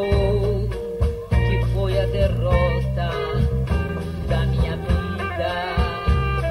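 Live band music from a stage performance: a swing-style number with guitar and a wavering melody line over sustained bass notes.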